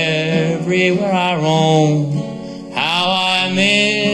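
A man singing a slow country ballad with long, drawn-out held notes, accompanying himself on a strummed acoustic guitar.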